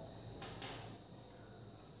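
Quiet room tone under a faint, steady high-pitched tone.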